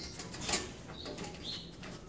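A dog mouthing and snuffling at a kennel gate, with a sharp click about half a second in and a few brief high squeaks around the middle.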